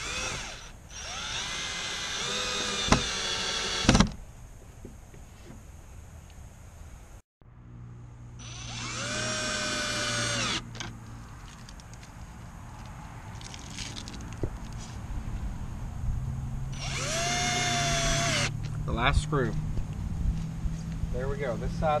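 Cordless drill driving screws through a metal gate latch into a wooden fence rail, in three runs of about two to four seconds each. Each run's motor whine rises as the drill spins up, holds steady, then stops. The first run ends with a sharp knock.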